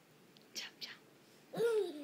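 A voice at low level: two short whispered sounds about a third of a second apart a little after half a second in, then a brief voiced sound rising and falling in pitch near the end.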